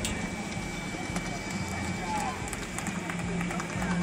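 Outdoor crowd background: faint distant voices and chatter with scattered light ticks, over a low steady hum.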